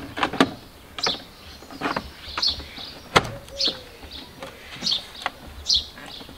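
Plastic knocks and clicks as a plastic mirror guard is pushed and worked onto a van's door mirror housing, with the sharpest click a little past three seconds in.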